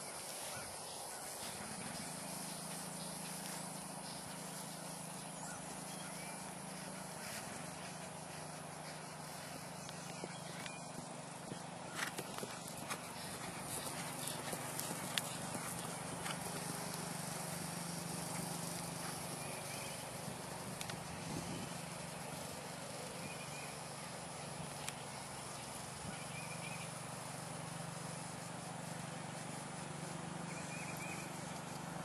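Hunter pony cantering on grass: soft hoofbeats over steady outdoor noise, with a few sharper thuds around the middle. A steady low drone runs underneath.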